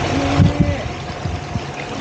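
Small motorboat under way at low speed: its engine running steadily, with water rushing along the hull. Two brief thumps about half a second in.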